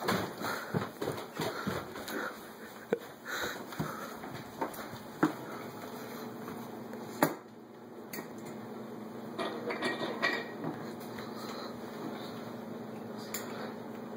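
Soft footsteps and small knocks as someone moves through a quiet house, then clinks and rustling of kitchen items being handled at the counter, with one sharp click about seven seconds in. A low steady hum sits under the second half.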